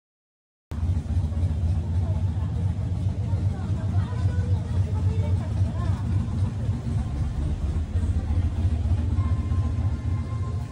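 Street ambience: a loud low rumble with faint voices mixed in, starting abruptly less than a second in.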